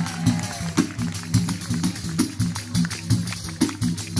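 Southern Italian folk music: a frame drum with jingles beating a steady rhythm over a low sustained instrumental accompaniment, with no singing.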